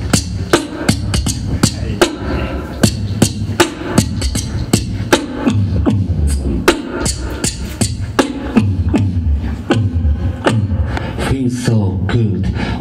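Solo beatbox performance amplified through a handheld microphone: sharp mouth-made snare and click hits, about two to three a second, over a continuous deep bass line that steps in pitch.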